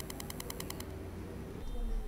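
Faint rapid ticking, about ten clicks a second, that stops about a second in; a low hum comes up near the end.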